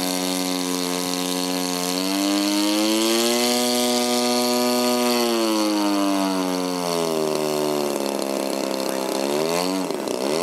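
Engine of a 70-inch 3DHS Slick radio-control aerobatic plane flying overhead. The engine note rises about two seconds in, holds for a few seconds, sinks again, then swings rapidly up and down in pitch near the end as the plane manoeuvres.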